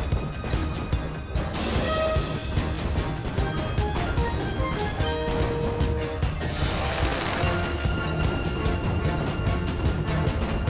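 Cartoon soundtrack music with a busy percussive beat and held instrument notes. A rushing swish comes about one and a half seconds in, and another near seven seconds.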